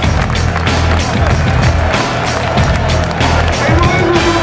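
Loud music from a football stadium's public-address loudspeakers, carried across the ground, with a heavy low rumble and many short crackling clicks in the mix.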